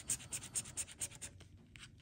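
Scratch-off lottery ticket being scraped by hand, the coating rubbed off the winning-numbers panel in quick back-and-forth strokes, about seven or eight a second, easing off near the end.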